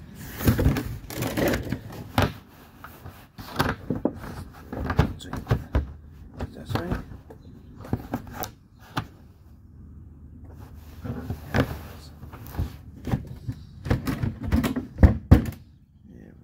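Irregular knocks, clicks and scuffs of footsteps on concrete and a phone being handled while walking.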